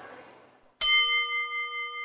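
A single bell-like chime struck about a second in, ringing on with a few clear overtones and fading slowly: a section-break chime between the lesson's dialogue and the narration.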